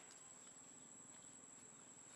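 Near silence with a faint, steady, high-pitched drone of insects.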